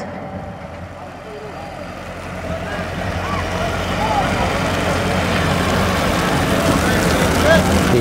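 Small tractor engine running steadily at a low, even pitch, growing louder over the first few seconds and then holding. Faint shouting voices are scattered over it.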